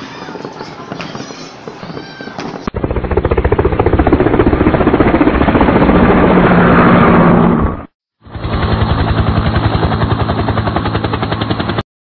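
People's voices and the crackle of fireworks for the first few seconds. Then an abrupt cut to a much louder, dense, rapid pulsing sound, which breaks off briefly near eight seconds in and cuts off just before the end.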